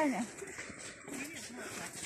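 A woman's voice trailing off at the start, then a quiet outdoor stretch with faint distant voices.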